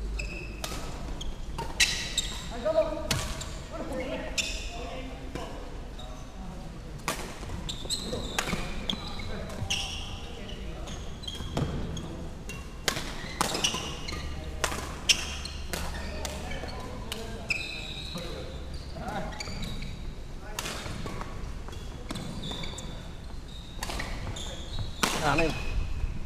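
Badminton rallies: rackets striking the shuttlecock in sharp, irregular cracks, several in quick succession at times, echoing in a large sports hall, with players' voices between shots.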